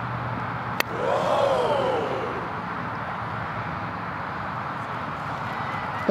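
A very thin-bladed putter striking a golf ball for a chip shot: one sharp click a little under a second in. Just after it a voice briefly rises and falls, over steady distant traffic noise.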